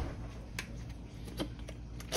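A few faint clicks and taps of a plastic garlic seasoning container being picked up and its cap opened, over a low steady hum.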